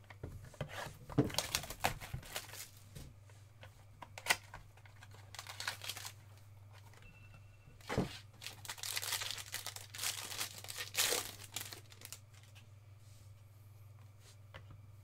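Foil trading card pack wrapper being torn open and crinkled in hand, in a series of crackly bursts, with a single thump about eight seconds in.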